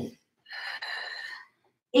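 A woman's breath of exertion during push-ups: one breathy breath lasting about a second, starting about half a second in.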